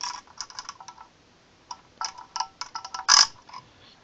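A metal rod scraping and clicking inside the brush opening of a stopped, burnt-out vacuum cleaner motor: a run of sharp metallic clicks and scrapes, with the loudest click just after three seconds.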